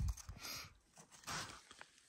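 Hand trowel scooping rocky, gravelly soil and tipping it into a container: a low thump at the start, then two short gritty rustles of soil and grit.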